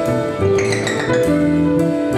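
Live jazz combo playing: sustained piano chords over drum-kit cymbal work, with a cymbal shimmer swelling and fading about half a second in.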